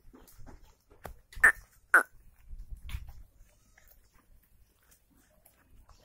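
Two short, loud animal calls about half a second apart, amid the light thuds and rustling of a herd of goats on the move; the rest is quiet.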